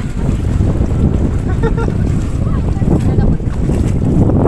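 Wind buffeting the microphone: a loud, steady low rumble. Faint voices are heard briefly around the middle.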